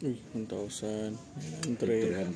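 A person's voice holding sung-like notes, with two light metallic clinks, one under a second in and one about a second and a half in.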